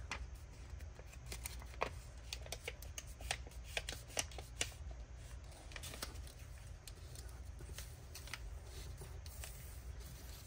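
Vellum paper being folded in and pressed flat by hand: faint, irregular crinkles and rustles of the stiff sheet.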